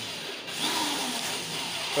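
Cordless drill driving a woofer's mounting screws into the wooden baffle of a speaker box. It runs, stops briefly about half a second in, then starts again.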